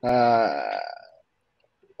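A man's long drawn-out "uh" hesitation sound, lasting about a second and trailing off.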